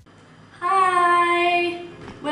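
A young woman's voice holding one long, steady sung note for just over a second, starting about half a second in, like a drawn-out greeting.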